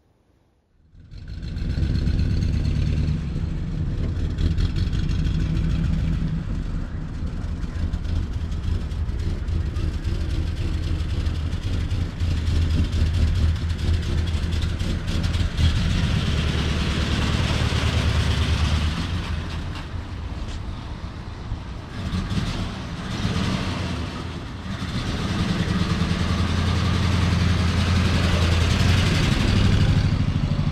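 A 1940 Ford's flathead V8 running as the coupe drives off at low speed, a steady low engine note that starts about a second in and eases off for a few seconds past the middle before rising again.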